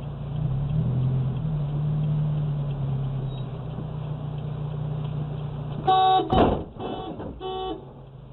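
A car engine idles with a steady low hum heard from inside the car. About six seconds in a car horn blasts, with a loud thump right after it, then gives two more short honks.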